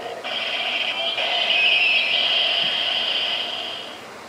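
Kamen Rider DX Decadriver toy belt playing an electronic sound effect through its built-in speaker. The sound is thin and tinny, starts just after the beginning, is loudest in the middle and fades out near the end.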